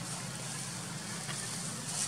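A steady low hum under an even background hiss, with one faint click a little past halfway.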